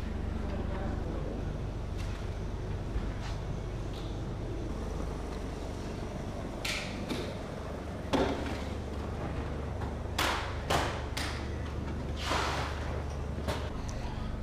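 Steady low hum of a workshop room, with several short rasping noises in the second half.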